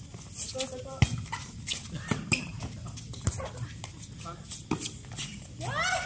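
Volleyball rally: a few sharp slaps of hands and forearms on the ball, about a second apart, with players' short calls and footsteps on the hard court.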